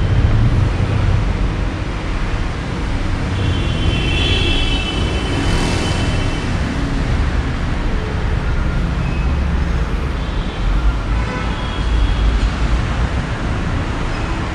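A steady low rumble of background noise, of the kind road traffic makes, with a few faint high tones about four to five seconds in.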